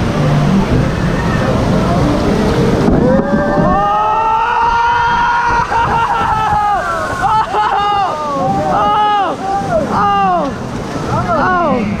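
Log flume ride: rushing water and wind on the microphone, then riders yelling, one long held cry followed by a string of short shouts that fall in pitch.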